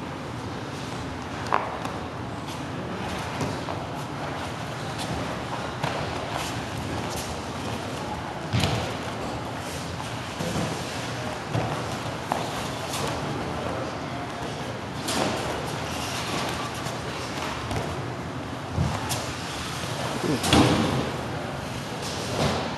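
Irregular thuds and slaps of two grapplers' bodies, hands and bare feet hitting and scuffing on foam mats during a Brazilian jiu-jitsu roll, over steady background noise. The loudest thump comes about a second and a half in, with a cluster of impacts near the end.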